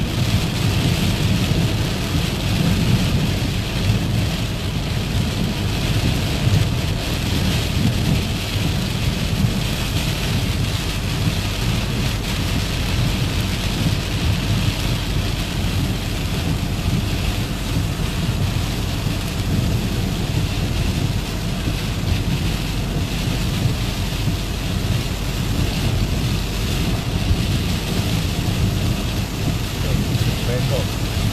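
Heavy rain falling on a moving car's windscreen and body, heard from inside the cabin, with a steady low rumble of the car on the wet road beneath it. The hiss of the downpour holds steady without a break.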